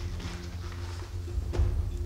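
Low, sustained background score of held tones over a steady bass, with a single soft knock about one and a half seconds in.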